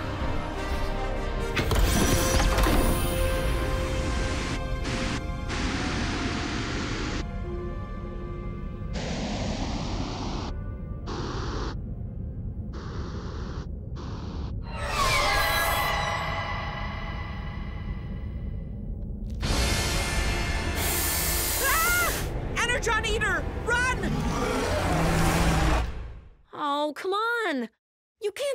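Tense, dramatic background music with layered sci-fi sound effects over it.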